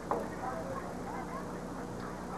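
Background murmur of many distant voices, with one brief, sharp call just after the start that falls in pitch.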